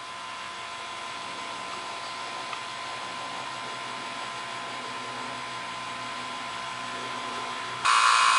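Electric OEM-brand rotary-vane vacuum pump running steadily with a motor hum and a steady whine while it pulls a vacuum on a car's AC system. It becomes much louder just before the end.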